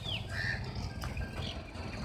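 Short, high bird chirps, the first falling in pitch, heard faintly over a steady low rumble.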